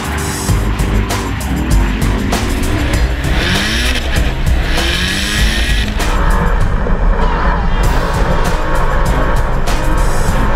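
Drift cars' engines revving and tyres squealing, mixed with background music. About six seconds in, the sound turns duller for a couple of seconds.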